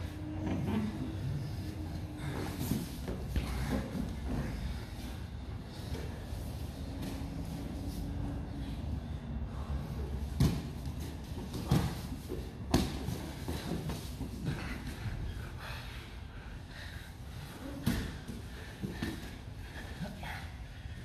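Two grapplers rolling on foam gym mats: bodies and limbs thudding and scuffing on the mats, with several sharp thumps, the loudest a little past halfway and near the end, along with breathing.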